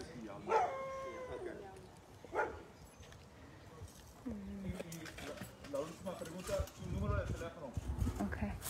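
A large dog behind a chain-link fence barking, two calls in the first few seconds, the first one drawn out. Quiet voices follow.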